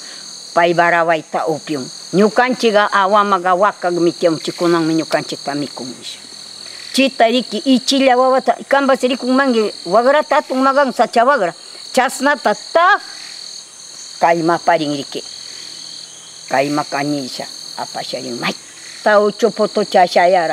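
A woman talking in Pastaza Quichua over a steady, high-pitched drone of rainforest insects that runs without a break.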